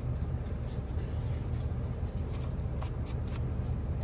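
Soft paper rustling and brushing as a foam ink blending tool is rubbed along the edges of a paper envelope, with a few faint light taps.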